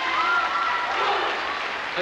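Audience applauding, with voices mixed in over the clapping.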